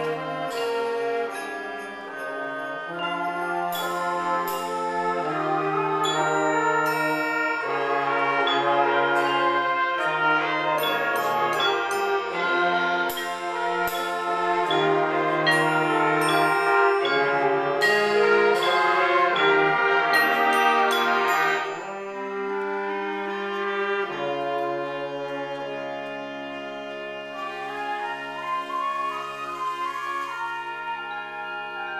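An eighth-grade concert band playing a piece, woodwinds and brass holding sustained chords with high ringing percussion strikes. The band plays fuller through the middle, then falls suddenly to a softer passage about two-thirds of the way through.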